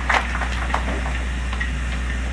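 A pause with no speech: a steady low hum with a couple of faint ticks, the first just after the start and another in the middle.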